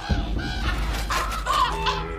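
Ravens croaking, several short, arched calls one after another over a low, steady rumble.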